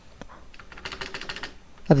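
Computer keyboard typing: a quick, fairly quiet run of keystrokes through the middle.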